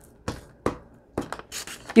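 A handful of short, light clicks and taps from a plastic glue stick being handled over paper on a cutting mat.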